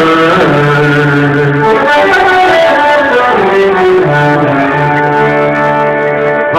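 Live band playing an instrumental passage without vocals: a melody of long held notes, some sliding between pitches, over a steady accompaniment.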